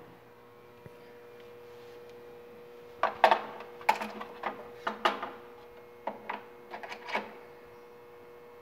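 Metal and plastic clicks and knocks as the spool gun's connector is worked into the welder's front socket and drive housing: a run of sharp irregular taps and scrapes from about three seconds in, over a faint steady hum.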